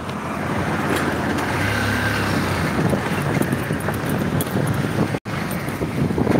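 Engine and road noise from riding a motorbike, with wind on the microphone and traffic passing. The sound cuts out for an instant about five seconds in.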